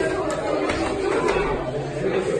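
Murmur of several people talking in a large room, with two sharp slaps, about a third of a second in and again just over a second in.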